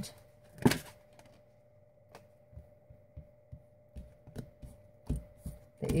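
A deck of tarot cards being shuffled by hand: one sharp snap of the cards less than a second in, then a few scattered soft clicks and thumps as the cards are handled and pulled.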